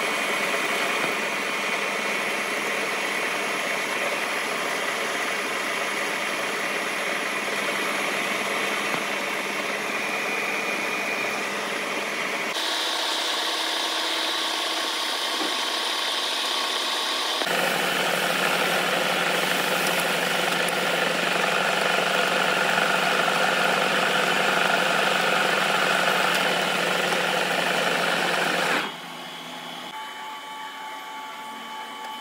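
A metal lathe runs steadily while a turning tool faces the end of a steel hydraulic cylinder rod. The machine's tone changes about twelve seconds in, grows louder a few seconds later, and drops off sharply just before the end.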